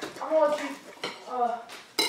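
A knife and fork clinking and scraping on a ceramic plate as a steak is cut, with a sharp click at the start and another near the end.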